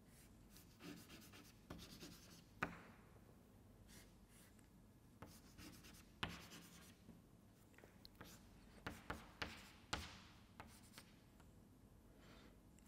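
Chalk writing on a blackboard: faint scratching strokes with sharp taps where the chalk strikes the board. The sharpest tap comes about two and a half seconds in, and a quick run of taps comes near the end.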